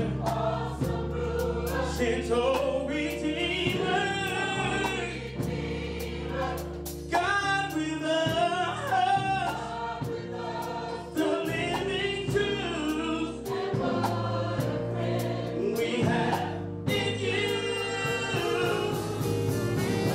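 A gospel choir singing with keyboard accompaniment: full voices over held low chords, with a steady beat of sharp strikes running through.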